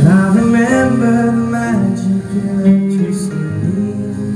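Male voice singing sustained, gliding notes over strummed acoustic guitar.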